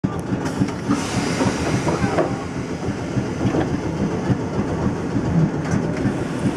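Interior sound of a Randen Mobo 600 tram car standing at a stop: a steady rumble with scattered knocks and clatter.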